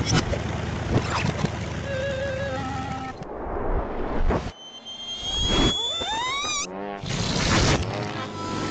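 Cartoon soundtrack of music and slapstick sound effects. Busy music with sharp hits gives way to a whoosh, then a whistling tone that rises and falls away, and a loud burst of noise near the end.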